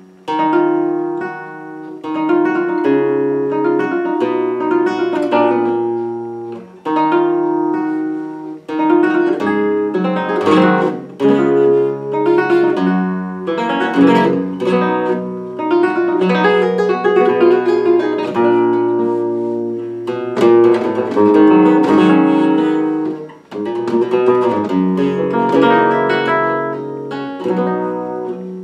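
Solo flamenco guitar playing a minera, with plucked melodic runs and strummed chords in free-flowing phrases and a few brief breaths between phrases.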